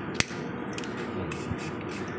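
A sharp plastic click a moment in, then a fainter knock about a second and a half in, as the lid of a PVC cable trunking is worked by hand over the wires.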